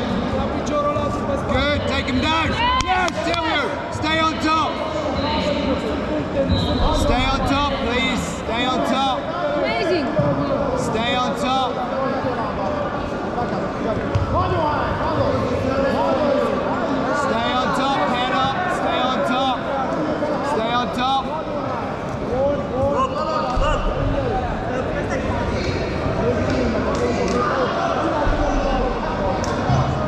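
Several people talking and calling out in a large, echoing sports hall, with scattered sharp thuds.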